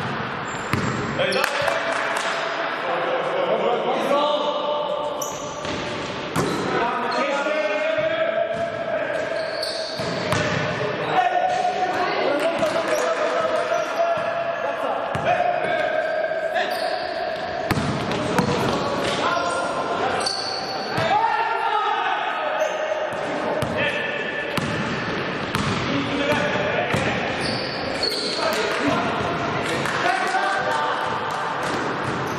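A basketball bouncing on a sports-hall court during live play, with players' voices and movement on the court, echoing in the hall.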